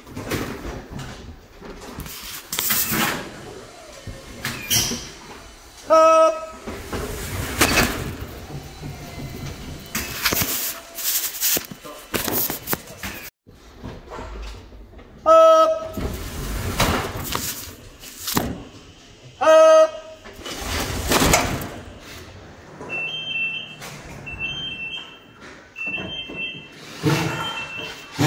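A crew hauling a heavy power cable by hand, with repeated shouted calls of "up" to time the pulls and many knocks and rubbing sounds of the cable being handled and dragged. Near the end, a run of short electronic beeps about every second and a half.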